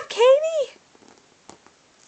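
Domestic cat meowing: a drawn-out meow that rises and falls in pitch, ending within the first second, followed by a faint tap.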